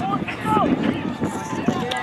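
Several voices of players and spectators talking and calling out over one another, with no words clear; near the end one voice holds a long, steady call.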